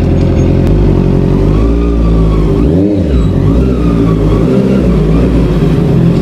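Honda CB650R's inline-four engine running at low speed as the motorcycle is ridden slowly. Its pitch dips and then rises again about halfway through.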